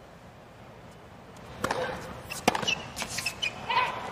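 Tennis rally on a hard court: a tennis ball struck by rackets and bouncing, heard as a few sharp knocks starting about a second and a half in, over a quiet stadium crowd.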